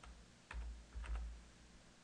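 Three keystrokes on a computer keyboard, each a short click with a low thump. The first comes about half a second in and the last two follow close together.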